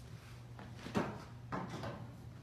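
A single sharp knock about a second in, followed by a shorter stretch of softer, rougher noise.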